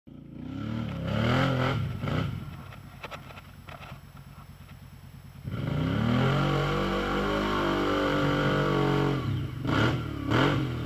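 ATV engine revving in short bursts, then run up hard about halfway through and held at high revs for several seconds under load as the quad churns through a deep rut of mud and slush, easing off near the end.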